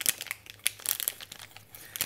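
Clear plastic wrapping around a piece of vegan cheese crinkling as it is handled, a run of short irregular crackles that thin out after about a second.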